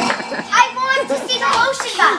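Children's voices: excited, high-pitched laughter and chatter without clear words.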